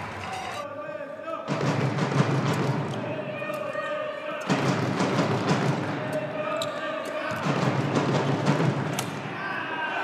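Badminton rally: a shuttlecock struck back and forth with racquets and players' feet thudding on the court, under loud crowd voices that come in waves.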